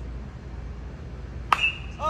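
A metal baseball bat hitting a pitched ball once, about a second and a half in: a sharp crack followed by a short ringing ping, the ball hit into the air.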